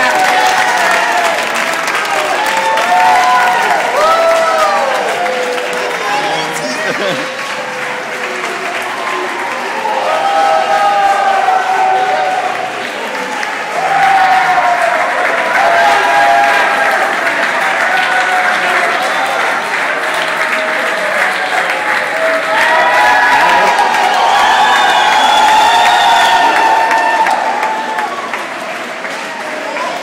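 A crowd clapping and cheering, with many voices whooping and shouting over continuous applause. It eases a little in the middle and swells again about halfway through.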